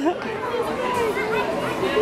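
Indistinct chatter of several people's voices overlapping, with no clear words.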